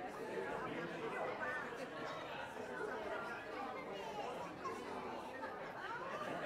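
Indistinct chatter of many people talking at once, with several voices overlapping and no single speaker standing out: a church congregation mingling in the sanctuary before the service.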